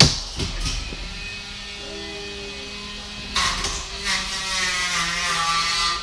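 Small electric motors of little combat robots whining, wavering up and down in pitch as they drive, louder in the second half. A sharp knock comes right at the start.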